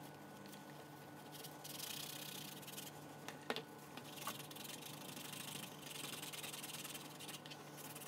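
A cloth rubbing wax into a hardened, wet-formed leather knife sheath, in three faint stretches of rubbing. A sharp tap comes about three and a half seconds in.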